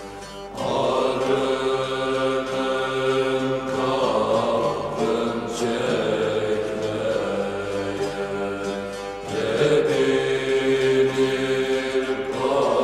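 Turkish folk song (türkü): voices singing long held phrases over a bağlama ensemble, with a new phrase starting about half a second in and another near the end.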